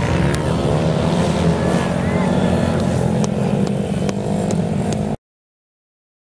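Mini-speedway motorcycle engines racing around the track, their pitch rising and falling as the riders accelerate, with voices mixed in. The sound cuts off suddenly a little after five seconds.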